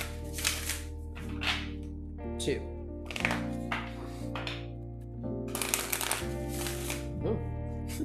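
A deck of oracle cards shuffled by hand in several short bursts, over soft lo-fi background music.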